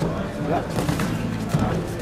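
Voices calling out in a large hall over a steady low hum, with a few short dull knocks.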